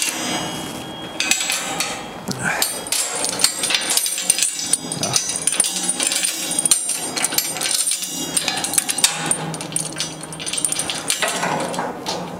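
Steel link chain being wrapped around a forklift's fork carriage and hooked onto a steel work basket to secure it against sliding off the forks: loose rattling of the links and many sharp metal-on-metal clinks.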